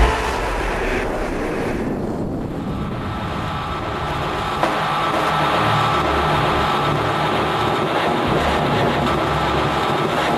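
A beatless breakdown in a dark electro track: a noisy industrial drone with a low, uneven rumble and a faint high held tone, much quieter than the beat that cuts out just as it begins.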